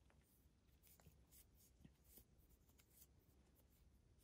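Near silence, with faint soft rustles and a few light ticks of a crochet hook drawing yarn through front post stitches.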